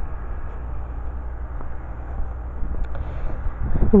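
Steady low rumble of wind buffeting the camera's microphone outdoors, with a faint click about three seconds in.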